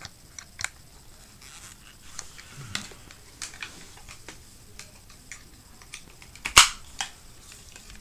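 Plastic GoPro mount parts being handled, with scattered small clicks and one loud sharp snap about six and a half seconds in as a J-hook mount is clipped into a Jaws clamp.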